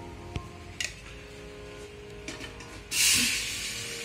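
Light background music with a couple of faint clicks. About three seconds in, a sudden loud sizzle as wet tomato-onion paste is poured into a hot aluminium pressure cooker, easing off gradually.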